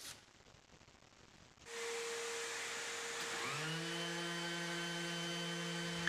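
Random orbital sander, clamped upside down, running free with no workpiece on its pad. After a near-silent second or so a hiss comes in, and about halfway through the motor's hum rises in pitch and settles into a steady whir.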